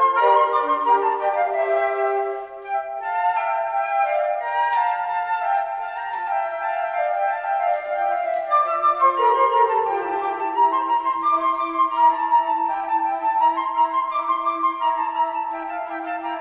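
A flute choir of several concert flutes playing together in harmony, several parts sounding at once in sustained, moving notes, with a brief dip in loudness about two and a half seconds in.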